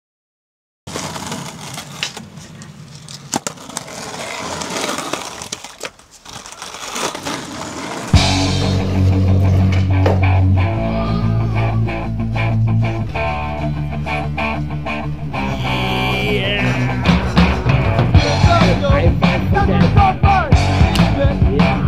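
Skateboard wheels rolling over pavement with scattered clacks. About eight seconds in, rock music with a heavy bass line and guitar comes in and carries on.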